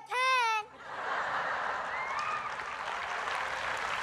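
Studio audience applauding steadily, starting about a second in, just after a brief high-pitched exclamation.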